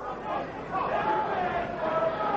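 Arena crowd chatter: many indistinct voices in a large hall, with one voice calling out, held and wavering, in the second half.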